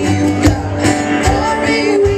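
Live alt-country band music: strummed acoustic guitars with low drum beats and a voice singing.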